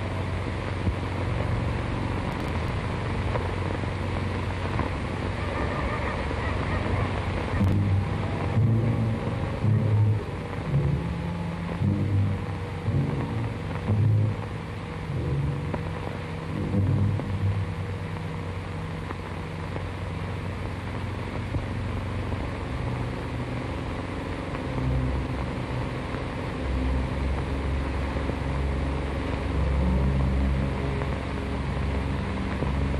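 Orchestral film score of low, sombre sustained notes over the steady hiss of an old optical soundtrack, with a run of separate low notes from about eight to seventeen seconds in.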